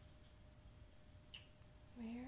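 Near silence: room tone with a faint steady hum and one soft tick past the middle.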